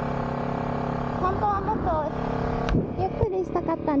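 Honda CBR250RR parallel-twin engine running at a steady speed while riding. A rider's voice talks over it. About three seconds in, a sharp knock is heard and the steady engine note drops away.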